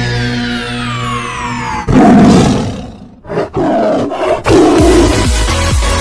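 Intro music with a falling synth sweep, broken off about two seconds in by a loud big-cat roar sound effect lasting about a second. Two short bursts follow, then a beat-driven electronic dance track starts.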